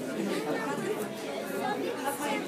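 Indistinct chatter of several people talking at once, with no clear words.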